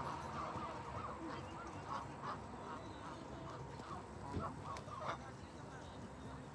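A flock of Canada geese honking: short calls repeated and overlapping, with two louder honks near the end.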